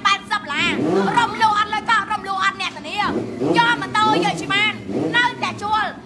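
Speech: a voice talking quickly, rising and falling widely in pitch, in short phrases with brief gaps.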